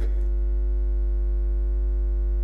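Loud, steady electrical mains hum at about 50 Hz, with a ladder of fainter, evenly spaced higher tones above it, unchanging throughout.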